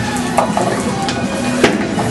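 Bowling alley clatter: a few sharp knocks, the loudest about one and a half seconds in, with music playing underneath.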